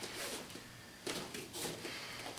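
Faint rustling and shuffling of jiu-jitsu gi cloth and bare feet moving on foam mats, in several soft bursts about half a second apart.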